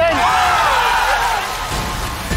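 Studio audience applauding and cheering, with one whooping voice rising over it and show music underneath; the applause eases after about a second and a half.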